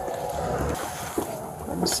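Body-worn camera handling noise outdoors: clothing rustle and wind rumbling on the microphone, with a single light knock about a second in.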